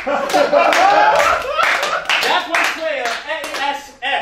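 Live audience applauding and laughing: dense clapping throughout, with laughter and voices mixed in.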